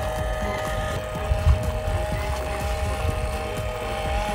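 Small electric motor and geartrain of a 1/24-scale FMS Toyota Hilux RC crawler in climb mode, whining steadily as it crawls up a steep rocky slope, with wind rumbling on the microphone.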